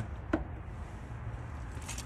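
A low, steady background rumble with one short click about a third of a second in.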